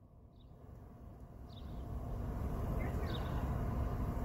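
Low rumble of a vehicle engine, near silent at first and growing steadily louder from about a second and a half in, with a few faint, short bird chirps over it.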